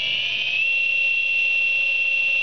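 Brushless outrunner motor of an RC model plane running on the bench with no propeller, at about half throttle: a high-pitched whine that rises in pitch in the first half second and then holds steady.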